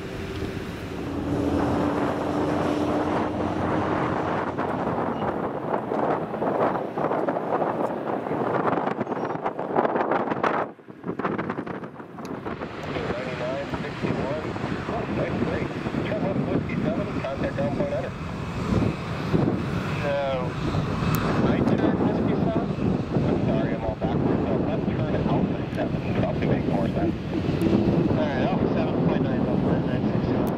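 Wind buffeting the microphone over the steady rumble of jet airliners taxiing, with a brief drop in level about eleven seconds in.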